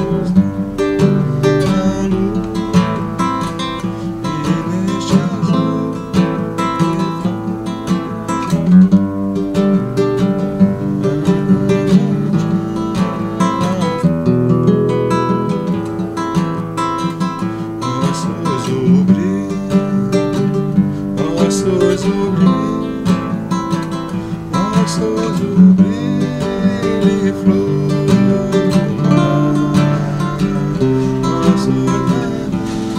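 Classical (nylon-string) guitar strumming the chord progression of a hymn in a steady march rhythm, changing chords every few beats.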